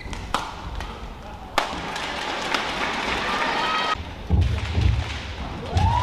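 Badminton play in a hall: two sharp racket strikes on the shuttlecock early on, then heavy low thuds in the last two seconds, with a short squeal like court shoes near the end.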